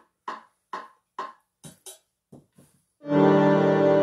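Casio electronic keyboard: a run of short, evenly spaced pitched ticks, about two a second, then about three seconds in a loud, held multi-note chord starts and sustains.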